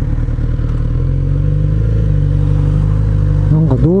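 Kawasaki Z900RS inline-four engine running at a steady speed while the motorcycle cruises, with low wind rumble on the helmet microphone. A man's voice starts just before the end.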